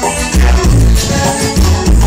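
Live tropical dance music led by keyboards, with a deep, steady bass line and a percussion beat, played loud over a PA.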